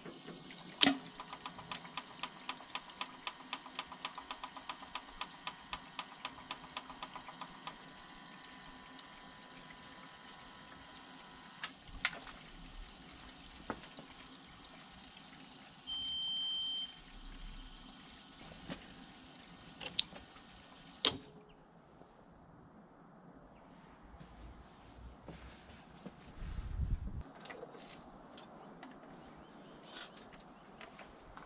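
A relay or contactor clicks in, then the Prius inverter, wired as a rectifier to charge the car from mains, gives off a steady hiss and buzz that pulses regularly for the first several seconds. The hiss runs on for about twenty seconds while the inverter's IGBTs are overloaded and smoking, then cuts off suddenly after a couple of sharp clicks as the power is switched off.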